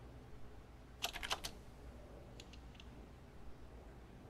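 A quick run of about five computer-keyboard clicks about a second in, then three fainter clicks a second or so later, over a faint steady hum.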